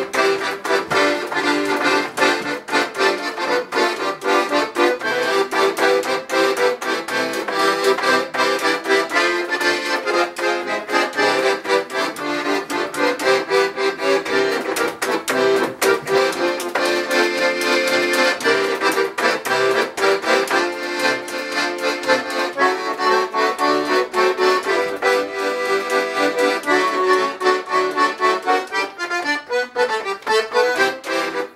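Paolo Soprani piano accordion playing a lively tune in chords and melody, its loudness pulsing rapidly several times a second.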